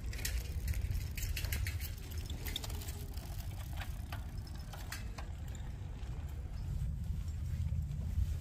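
Bicycle rattling over rough stone paving blocks, a quick irregular string of clicks and knocks during the first five seconds or so, over a steady low rumble.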